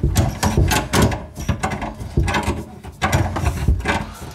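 Channel-lock (tongue-and-groove) pliers gripping and turning the coupling nut of a faucet supply line, giving a run of irregular metallic clicks and knocks as the nut is tightened.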